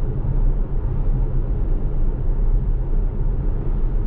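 Steady low road rumble inside the cabin of a 2015 Tesla Model S cruising at about 45 mph, with no engine note.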